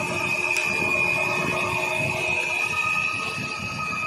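Cylinder honing machine running, a steady high whine over a mechanical rumble.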